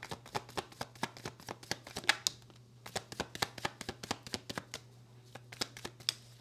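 A tarot deck being shuffled by hand: a quick, irregular run of light card clicks that pauses about five seconds in, then a few more near the end.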